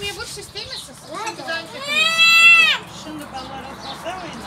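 Scattered chatter of voices, with a loud, very high-pitched drawn-out squeal from one voice about two seconds in, lasting about a second, rising at the start and falling away at the end.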